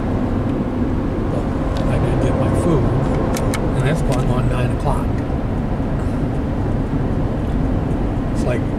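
Steady road and engine rumble heard inside a car's cabin while driving at highway speed. A few short clicks come around the middle.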